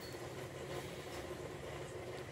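Steady low mechanical hum in the background, unchanging throughout.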